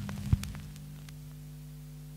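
The last ringing notes of the record die away, followed by a single click about a third of a second in. Then a turntable playback chain gives a steady low hum as the stylus stays in the groove after the music has ended.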